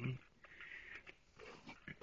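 Newborn Alaskan Klee Kai puppies nursing, with soft squeaks and snuffling noises.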